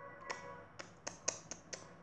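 A quiet run of about six short, sharp clicks spread over a second and a half, over a faint steady tone near the start.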